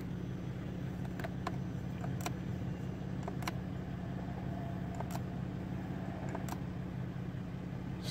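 Infiniti G35's V6 engine idling steadily in Park, heard from inside the cabin, with several faint light clicks scattered over the hum.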